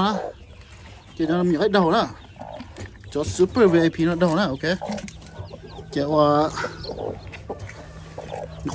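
Hen at a nest box, held by hand, giving three drawn-out calls: about a second in, around three to four seconds in, and a shorter one about six seconds in.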